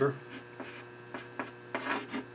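Chalk writing on a blackboard: a few light taps and short scratches, with a longer scrape near the end, over a steady low electrical hum.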